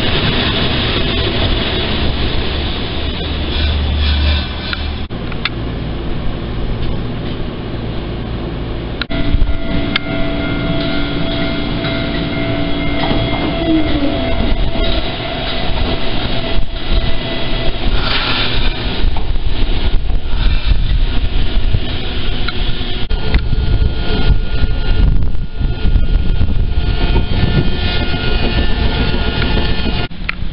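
Fukui Railway tram running on its rails, first heard from on board and then pulling in at a station platform. A steady hum runs for several seconds in the middle and bends away, and there is a brief louder burst a little after.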